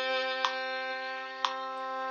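Violin bowing one long whole-note C (third finger on the G string) over a steady G drone tone, with metronome clicks once a second at 60 beats per minute.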